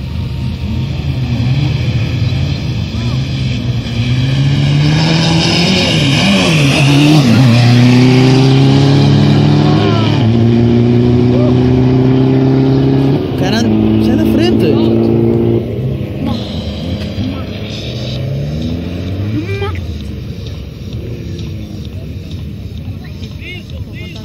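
Cars on a drag strip accelerating hard from a standing start. The engine pitch climbs and drops back at each gear change, and the sound is loudest around the middle. About two-thirds of the way through it drops off sharply and then fades as the cars run away down the track.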